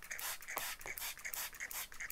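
Plastic trigger spray bottle pumped rapidly, squirting water into a small bottle-cap water dish: a quick run of short hissing squirts, about five a second.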